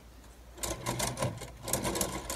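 Lego Ideas Steamboat Willie (set 21317) being pushed along a table, its plastic gear mechanism clicking and rattling rapidly as it spins the paddle wheels on both sides and moves the smokestacks up and down. The clatter starts about half a second in and keeps going.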